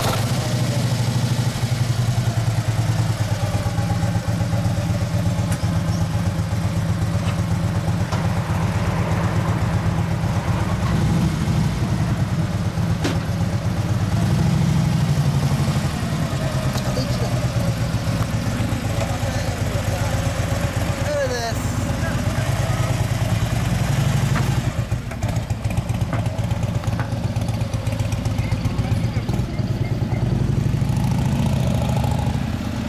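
2013 Harley-Davidson Dyna Switchback's V-twin, fitted with a Vance & Hines exhaust, air filter and injection tuning, running steadily at idle, with a second motorcycle engine running alongside.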